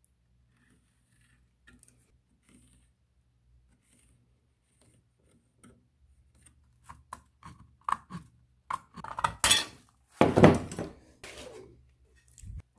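Thin aluminium sheet metal being handled on a wooden workbench: scattered light metallic clinks and rattles, sparse at first and coming thickest about ten seconds in.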